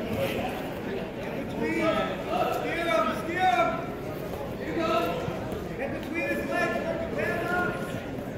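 Indistinct shouted voices of spectators and coaches calling out, over the murmur of a crowd in a gym.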